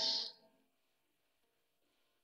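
The isolated female lead vocal trails off at the very start, ending its last sung word on a soft 's' hiss, then near silence.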